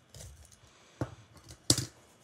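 A cardboard mailer being cut and pried open with a small utility knife: a few sharp clicks and scrapes, the loudest near the end.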